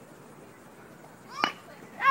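Baseball bat tapping the pitch on a bunt: one short, sharp knock about one and a half seconds in, over faint outdoor background.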